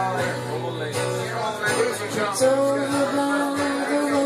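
Acoustic guitar played live, with sustained ringing notes and a singing voice over it.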